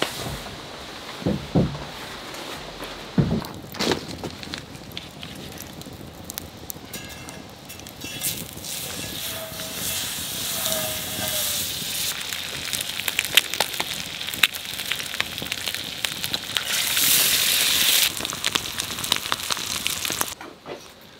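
Eggs sizzling in a frying pan over a wood campfire, with the fire crackling and popping throughout. The sizzle builds from about eight seconds in and is loudest near the end, after a few separate knocks in the first seconds.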